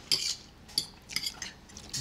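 Metal forks clinking and scraping against a cooking pot as pasta is twirled out of it: a handful of short, high-pitched clinks spread over two seconds.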